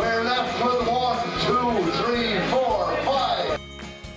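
A man singing into a microphone over backing music, which cuts off suddenly near the end.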